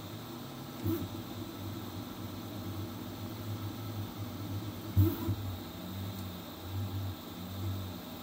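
Flsun V400 delta 3D printer printing, its stepper motors humming in short pulses, with a few brief rising-and-falling tones as the print head changes speed, over a steady hiss. Two sharp knocks come about a second in and at five seconds, the second the loudest.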